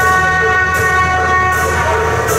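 Procession music: several steady horn-like tones held together, with a short cymbal-like crash about every three-quarters of a second. The held tones stop just before the end.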